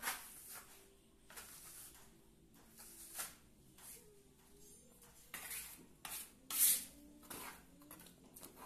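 Steel plastering trowel scraping through wet cement mortar in a series of short, uneven strokes as a wall is skim-coated smooth. The loudest scrape comes about two-thirds of the way through.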